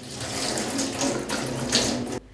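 Water running steadily from a wall-mounted metal tap and splashing over hands being washed beneath it.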